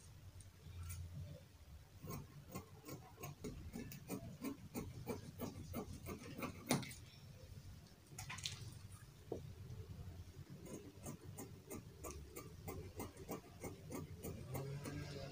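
Scissors cutting, heard as a run of faint, irregular clicks, a few a second, with one louder snip about halfway through.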